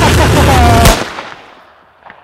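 A loud, distorted blast of noise like gunfire, ending in a sharp crack just under a second in, then dying away.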